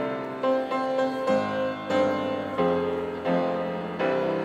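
Yamaha grand piano played live: a melody of struck notes over ringing chords, a new chord or note landing every half second or so.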